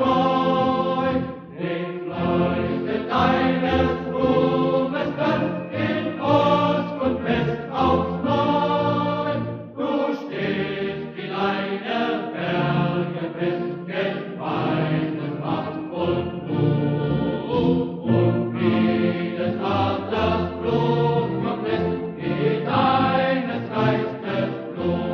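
A choir singing a slow anthem in sustained, phrase-by-phrase lines.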